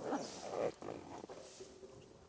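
Macaques calling: a few short calls, the loudest in the first second, then softer ones.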